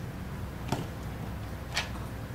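Light handling noise as a crocheted piece is laid out and smoothed on a cloth-covered table: two brief soft clicks, about a second apart, over a low steady hum.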